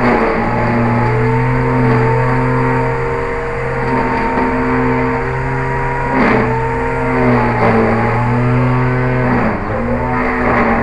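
Small quadcopter drone's motors and propellers buzzing steadily with the drone stuck in a tree, the pitch shifting a little now and then. Brief knocks come about six seconds in and again near the end.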